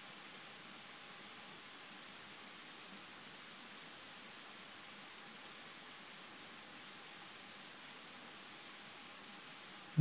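Faint steady hiss of room tone, with no distinct sound in it.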